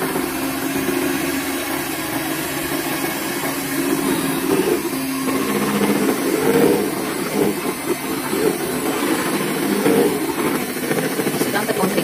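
Electric hand mixer running steadily, its beaters churning thick cake batter in a bowl.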